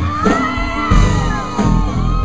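Live rock band playing, with acoustic guitar, under a shouted 'Yeah!' from the singer. It is followed by several overlapping long whoops from the audience that rise and fall and die away about a second and a half in.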